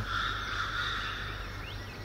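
A steady, high insect drone that fades toward the end, over a low background hum.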